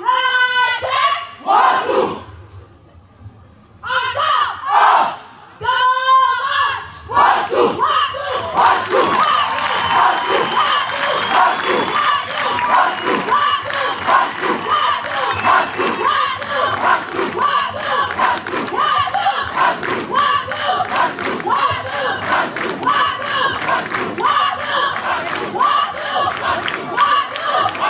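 Military recruits' drill: several long shouted calls, then from about seven seconds in a large group chanting together while jogging in formation, with the steady beat of many boots striking the ground in step.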